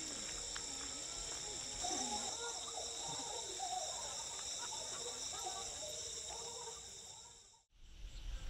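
Night-time insect chorus, a steady high-pitched trilling, with wavering calls rising and falling over it from about two seconds in; it all fades out near the end.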